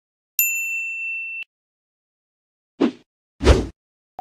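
Editing sound effects: a clear ding held for about a second, then near the end two short transition hits, the second louder and deeper.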